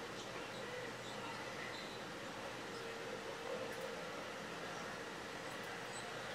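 Low, steady background noise, room tone with a faint hum, and no clear events.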